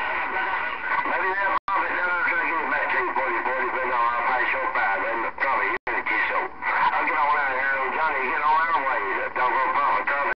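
Distant voices coming in over a Galaxy CB radio's speaker, garbled and mixed with static so that no words can be made out, the sound cutting out completely for an instant twice.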